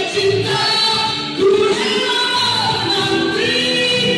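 A man and a woman singing a song together into microphones, amplified through a PA loudspeaker, holding long notes and moving between them.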